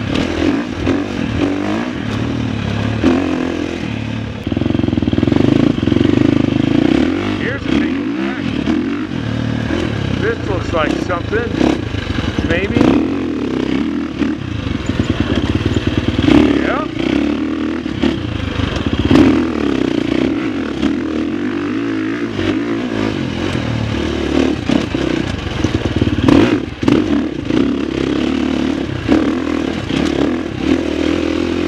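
Husqvarna FX350 dirt bike's 350 cc four-stroke single-cylinder engine running under way, its pitch rising and falling as the throttle is opened and closed. Scattered knocks and clatter come from the bike over rough ground.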